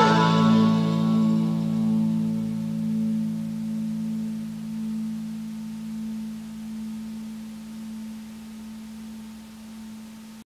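A rock band's final chord left ringing and slowly dying away over about ten seconds, the end of the song.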